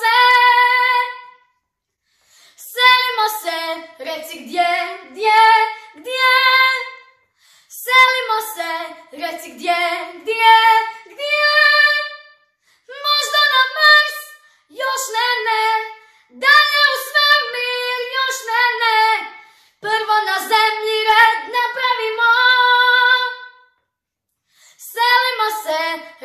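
A young girl singing solo in Croatian with no accompaniment, in phrases of a few seconds each broken by short silent pauses.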